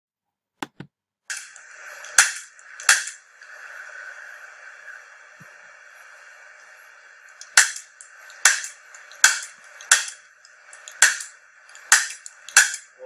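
Handheld chiropractic adjusting instrument firing against the upper spine, making sharp single clicks. There are two clicks about 0.7 s apart, then after a pause about six more at roughly one a second. A steady faint hiss lies under them.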